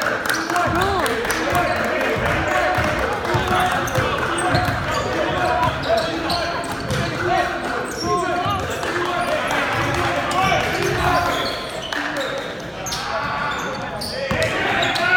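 Crowd noise in a gym during a basketball game: many voices talking and calling out at once, with the ball bouncing on the hardwood court.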